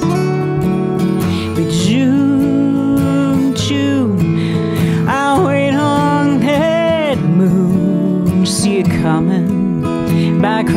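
Live acoustic Americana duet: two acoustic guitars playing together, with a melody line that glides up and down over them.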